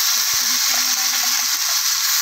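Freshly added onion and garlic paste sizzling hard in hot oil in a kadhai, a loud steady hiss.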